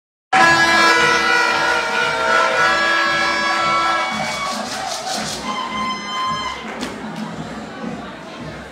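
Electric keyboard music in a large hall: long held chords over a steady low beat, getting quieter after about four seconds.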